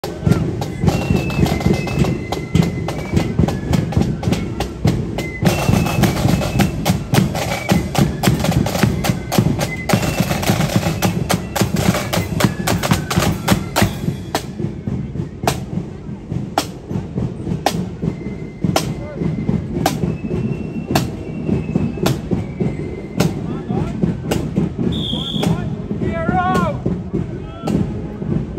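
Marching flute band: flutes play a tune over snare and bass drums for about fourteen seconds, then the flutes stop and the drums carry on alone, beating steady marching time.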